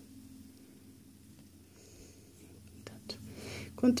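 Quiet room with faint soft rustles and a few light ticks of a crochet hook working white yarn, the ticks and rustles coming about three seconds in.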